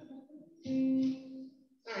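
Guitar sounding a held note that rings for about a second and fades.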